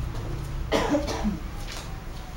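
A person coughing once, a short harsh burst about two-thirds of a second in, with a weaker follow-up near the end, over a steady low room hum.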